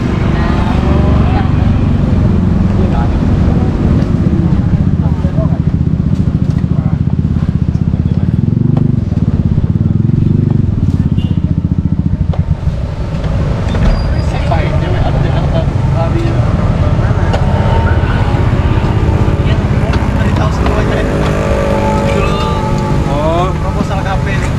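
Street traffic with motorcycles running past, under a steady low rumble, with indistinct voices talking nearby.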